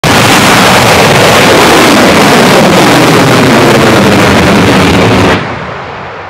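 The SuperDraco abort engines of a SpaceX Dragon 2 capsule firing at full thrust in a pad abort, a very loud, steady rushing noise that cuts off suddenly a little after five seconds in.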